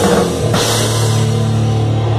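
Thrash metal band playing live: electric guitar, bass and drum kit with cymbals. About half a second in, the busy playing gives way to a held, ringing chord over cymbals.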